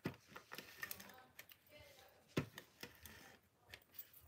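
Faint, scattered clicks and light rubbing as a clear plastic hand tool is pressed and worked over layered paper and vellum on a craft mat, burnishing it down. Two sharper clicks stand out, one at the very start and one about halfway through.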